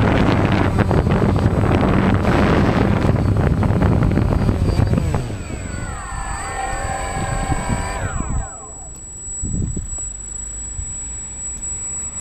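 DJI Phantom quadcopter's motors and propellers running steadily, then spinning down with several whines falling in pitch over about three seconds, around halfway through. A few soft handling knocks follow near the end.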